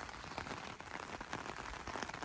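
Light rain falling: a faint, steady hiss with many tiny drop ticks.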